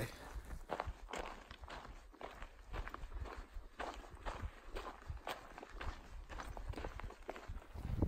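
A hiker's footsteps on a dirt forest trail strewn with needles and twigs, a steady walking rhythm of about two steps a second.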